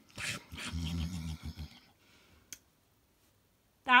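A person's low, gravelly munching and gobbling noise voicing a puppet eating, choppy for about a second and a half, followed by a single sharp click.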